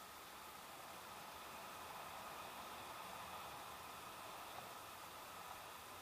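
Faint steady hiss with no distinct events.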